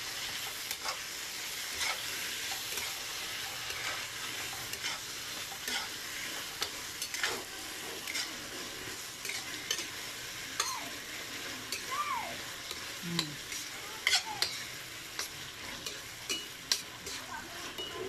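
Eggplant and oyster sauce sizzling steadily in a stainless steel wok while a metal spatula stirs them, scraping and clicking against the pan many times throughout.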